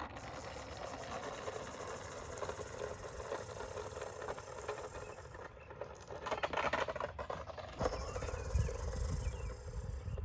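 Electric 3D-printed RC streamliner car running on asphalt: motor whine and tyre noise over wind rumble on the microphone, across several short cuts, with a pitch rising near the end as the motor speeds up.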